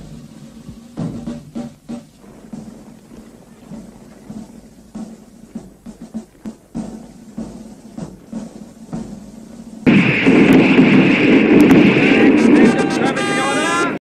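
Battle soundtrack: a marching column with music under it, then about ten seconds in a sudden, loud, continuous din of rifle fire and shouting. Horses whinny near the end.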